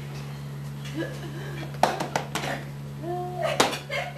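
A few sharp knocks or slaps, three in quick succession about two seconds in and a louder one near the end, among short voice sounds over a steady electrical hum.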